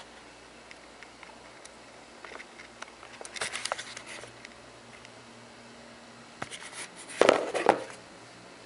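Quiet room tone with light rustling and small clicks from a handheld camera being moved around. A short, louder rustle comes about seven seconds in.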